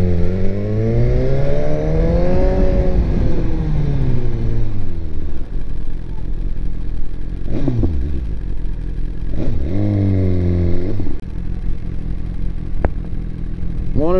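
2018 BMW S1000RR's inline-four engine pulling away at low speed. Its pitch rises smoothly for about two and a half seconds, then falls as the throttle is rolled off, with shorter pulls later on. Two coughs come at the very start.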